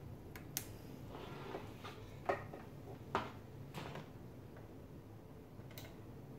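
A few faint, separate clicks and knocks from a mini desktop computer and its cables being handled on a table.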